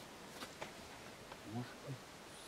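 Faint outdoor ambience with a low insect buzz and a few soft clicks; a man's voice says a short word near the end.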